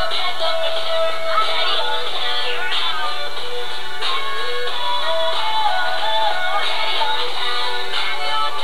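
Pop song playing, with a sung vocal melody over the backing track.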